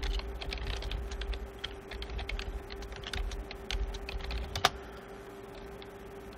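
Computer keyboard typing: a run of quick keystrokes, ending about four and a half seconds in with one sharp, louder key press, over a steady faint hum.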